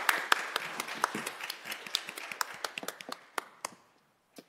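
A group of people applauding by hand, the clapping thinning out and stopping just before the end.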